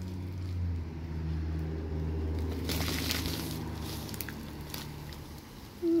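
Plastic mailer envelopes rustling as they are handled, with a short burst about three seconds in, over a low steady rumble that fades toward the end.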